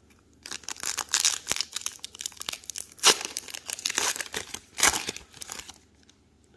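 Plastic wrapper of a 2022 Topps Gallery baseball card pack being torn open and crinkled by hand, a run of dense crackles starting about half a second in, with two sharper, louder crackles about three seconds in and near the end.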